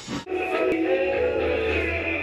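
Music played on a cassette tape player. About a quarter of a second in it breaks off abruptly, and a song with long held sung notes over a steady bass takes over.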